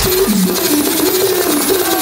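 Loud electronic bass music (dubstep / drum and bass) over a club PA, in a breakdown. The heavy low bass cuts out as it begins, leaving a wobbling mid-pitched synth line over dense high hiss. A short burst of bass returns near the end.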